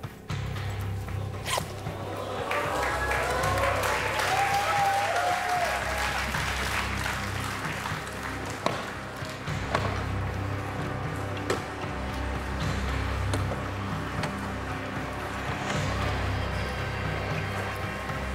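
Tense background music with a low bass drone over audience noise, with a few sharp clicks.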